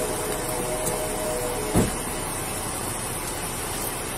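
Steady roadside vehicle noise under a constant high hiss, picked up on a police body-camera microphone, with a single short knock about two seconds in.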